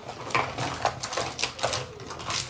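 Small items knocking and clicking together as they are packed by hand into a fabric toiletry bag, with light rustling: a string of irregular light clicks.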